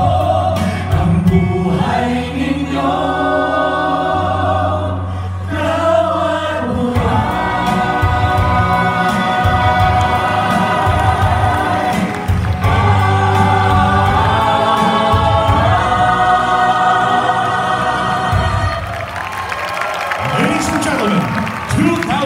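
A small vocal ensemble of men and women singing a song in harmony into microphones over an instrumental backing track with a steady bass line. Near the end the song finishes and audience applause and cheering follow.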